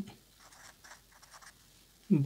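Faint scratching strokes of a marker pen writing a word on paper, several short strokes in quick succession.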